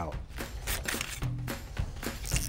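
Background music playing under the show, with no clear work sounds standing out.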